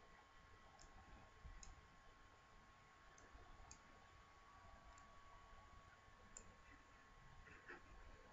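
Near silence: faint room tone with a handful of soft computer mouse clicks spread through it.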